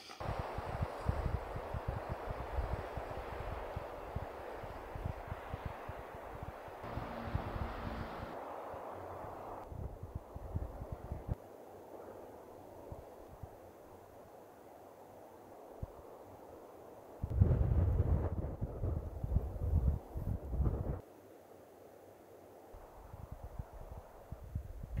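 Outdoor wind, with gusts rumbling against the microphone: a rushing first half, a quieter stretch, and a stronger gust about three-quarters of the way through.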